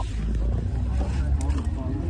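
Low rumble of wind buffeting a phone microphone, with faint voices behind it.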